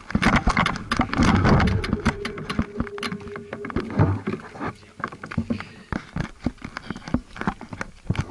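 Close handling noise from the camera and its mount being touched and moved: irregular clicks, knocks and rubbing, with a short steady tone lasting about two seconds near the middle.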